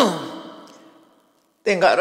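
A man speaking Burmese into a microphone: a drawn-out word falling in pitch and fading away, a short pause, then speech resumes near the end.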